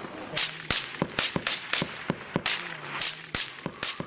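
Metal cartridges on an ammunition belt clicking and clinking as it is handled: a run of sharp, irregular clicks, several a second, some in quick pairs.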